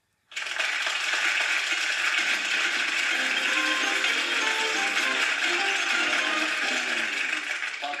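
Studio audience applause with game-show music over it, starting suddenly after a brief silence; the music's steady tones come in about three seconds in. It is heard through a television's speaker.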